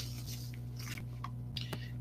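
Faint rustling and a couple of light clicks from a small cardboard sauce box being handled, over a steady low hum.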